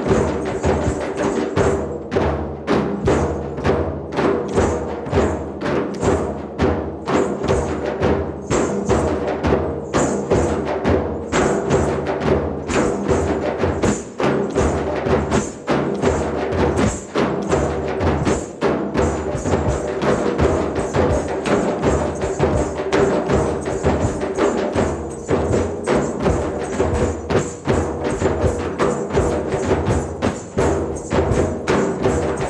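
An ensemble of hand drums, large frame drums, djembes and a goblet drum, playing a fast, dense rhythm of many strokes a second. A steady held tone runs underneath.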